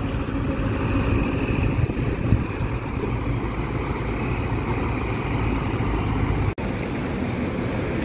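Diesel engine of a large intercity coach running steadily as the bus pulls away at low speed. The sound drops out briefly about six and a half seconds in.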